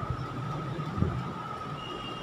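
Low steady background rumble with a faint steady hum, and a single soft knock about a second in.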